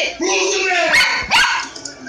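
A man yelling excitedly with a dog barking in among the shouts: a few loud, short outbursts in the first second and a half, then it drops quieter.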